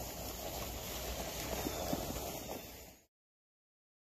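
Walk-behind broadcast spreader pushed across a lawn, its wheels and spinning impeller rattling steadily as it throws grass seed. The sound cuts off abruptly about three seconds in.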